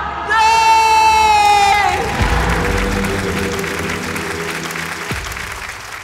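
A singer holds the last long note of a Hindi song, ending about two seconds in. An audience then applauds and cheers over a lingering music chord, and the sound fades away toward the end.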